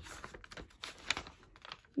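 Faint, irregular clicks and taps in quick succession: handling noise of a picture book being held up and moved.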